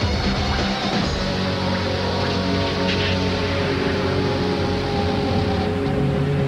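Loud, dense TV promo music with long held tones, one of them slowly falling in pitch.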